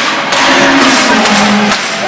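Rock band playing live at a large open-air concert: drums beating under sustained instruments, with the singer coming back in near the end.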